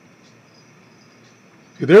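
Faint steady static hiss from a Bearcat 101 scanner radio's speaker while the scanner idles without scanning. A man starts speaking near the end.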